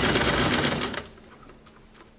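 Electric home sewing machine stitching a seam through two layers of fabric. It runs steadily and stops about a second in.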